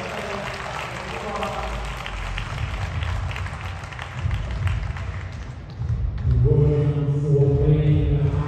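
Arena crowd clapping and cheering after the deciding point of a table tennis game, with many sharp claps. From about six seconds in, a loud, drawn-out, chant-like voice takes over and is the loudest sound.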